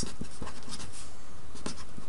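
Handwriting: a few faint scratches and taps of a pen, mostly near the start and again about a second and a half in, over a steady low hum.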